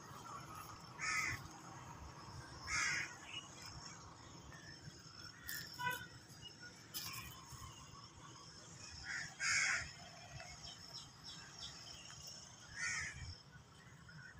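Short, rough bird calls, four or five of them, a few seconds apart, over a faint steady outdoor background.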